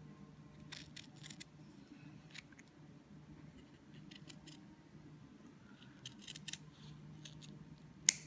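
Scissors snipping satin ribbon, rounding off the corners of short ribbon pieces: faint, short clusters of snips every second or two.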